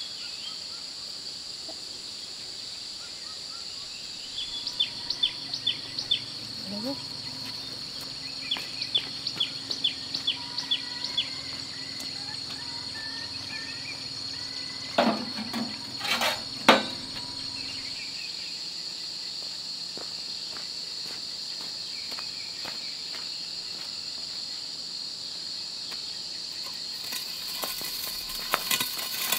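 Insects keeping up a steady high-pitched drone, with runs of short high chirps in the first half and a few sharp knocks about halfway through.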